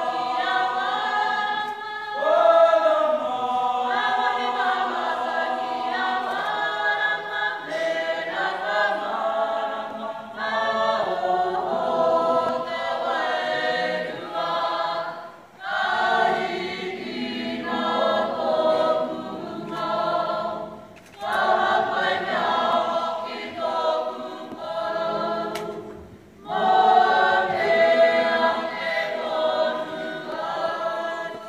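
A large group of voices singing together a cappella, in long phrases broken by short pauses.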